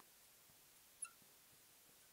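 Near silence, with one short high squeak about a second in: a marker squeaking as it writes on a glass lightboard.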